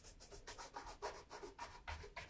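Shoe brush stroked quickly back and forth over a leather oxford, the bristles swishing against the leather about four or five times a second.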